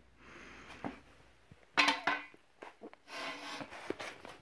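Steel desk-frame crossbar with telescoping sections being slid in and out by hand: a scraping slide of metal on metal with a few light clicks. There is a short vocal sound about two seconds in.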